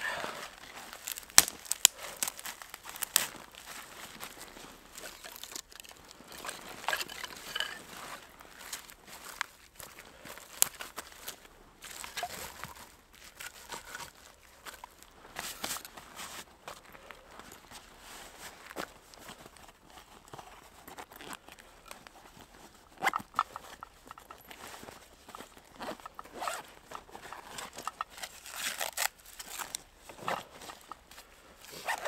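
Hand-handling of fire materials: split kindling sticks knocking and clicking as they are set down, with crinkling and rustling of dry tinder worked in the hands.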